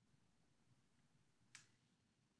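Near silence, with a single faint computer mouse click about one and a half seconds in.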